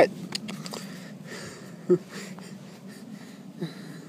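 Breathing close to the microphone, with faint rustling and one short grunt about two seconds in.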